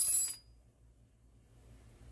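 A brief high hiss that cuts off about half a second in, then near silence: room tone.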